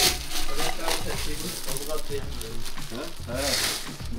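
A metal scoop digging into a heap of in-shell pistachios and pouring them into a plastic bag: a dry rattle and crackle of shells, loudest near the end as the nuts pour into the bag.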